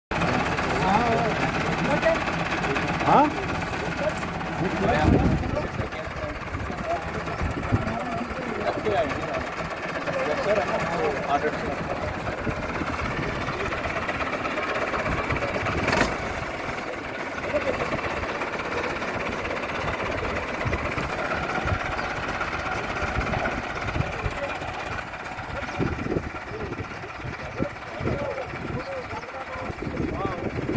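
Massey Ferguson tractor's diesel engine running steadily, with people's voices over it.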